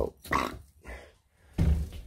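A person's voice making two short sounds without words, then a loud, dull low bump about one and a half seconds in.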